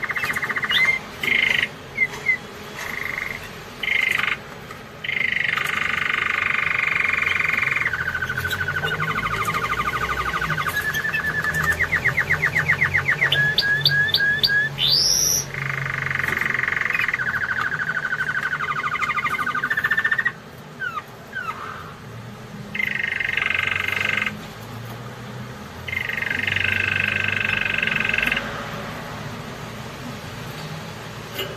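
Canary singing: long buzzy rolls held for a second or more at a time, with a fast trill of repeated notes and a quick rising whistle about halfway through.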